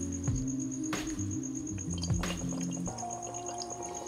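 Background music with steady held tones that change every second or so.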